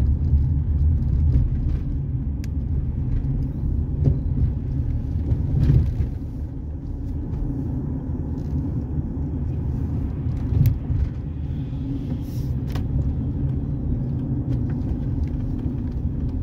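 Steady low rumble of a car driving, heard from inside its cabin: engine and tyre noise, with a few faint, brief clicks and knocks.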